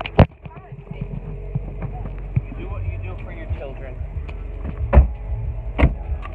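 Handling noise from a phone held against clothing while someone climbs into a car: rustling and knocking, with three loud thumps, one just after the start, one at about five seconds and one just before the end, over a low steady rumble.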